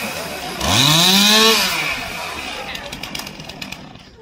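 Chainsaw engine revved once, its pitch rising steeply and falling back about a second later, then dropping away toward idle.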